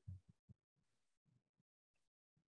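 Near silence: a few faint low thumps in the first half second, then nothing.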